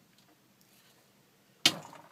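Near silence of room tone, then a single sharp click near the end that dies away quickly.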